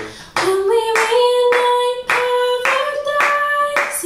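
A woman sings one long held note into a microphone, sliding up into it at the start and lifting slightly near the end, over steady hand claps keeping time at about two a second.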